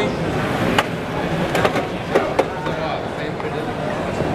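Background voices and general bustle, with a handful of sharp knocks or clicks between about one and two and a half seconds in.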